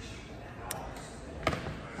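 Two sharp knocks, a faint one and then a louder one just under a second later, over steady room noise.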